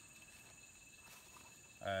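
Faint, steady chorus of rainforest insects: a continuous high, thin buzz with no breaks. A man's voice starts near the end.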